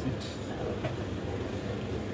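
Steady restaurant background din: a low rumble with indistinct voices.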